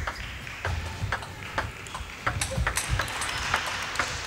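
Table tennis rally: the celluloid-type plastic ball clicking sharply off rubber-faced paddles and bouncing on the table, a quick run of clicks a few times a second.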